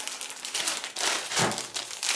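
Plastic bread bag crinkling and rustling as it is handled, a dense crackle that swells in the middle.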